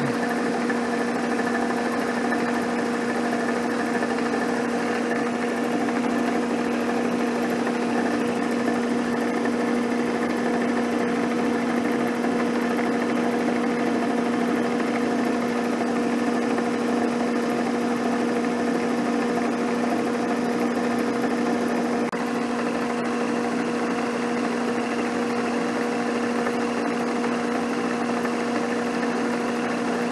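Milling machine taking a facing cut with a carbide positive-rake insert face mill at about 720 rpm: a steady machine hum with the cutting noise, holding one even pitch throughout.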